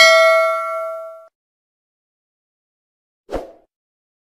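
Bell-chime sound effect of a subscribe-button animation ringing and fading out over about a second, followed near the end by a brief, dull knock.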